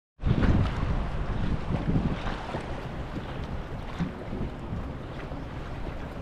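Wind buffeting the microphone over water lapping against a Zodiac inflatable boat, with a few light knocks. Loudest in the first two seconds, then steadier.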